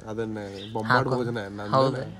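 A man's wordless vocalizing, a drawn-out voiced sound that bends up and down in pitch with no words.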